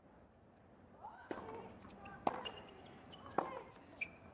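Tennis rally: sharp strikes of racquets on the ball, roughly once a second and three in all, starting about a second in, each shot followed by a player's grunt.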